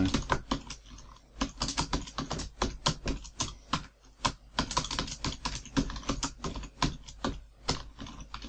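Typing on a computer keyboard: quick, irregular keystrokes in runs, with a few short pauses between them.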